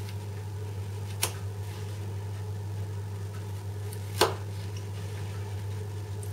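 Two short sharp clicks, about three seconds apart, as a small kitchen knife cuts through a thin carrot slice and meets the plastic cutting board, over a steady low hum.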